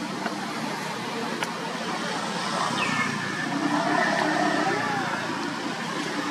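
Steady outdoor background noise with indistinct voices, and a few faint short pitched calls around the middle.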